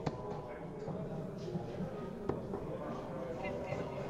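Low background murmur of an indoor hall with faint, distant voices, and a single sharp click a little past halfway through.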